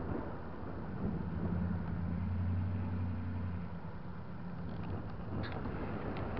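Car engine idling, heard from inside the vehicle, with a low steady hum that swells for about three seconds a second in and then fades back.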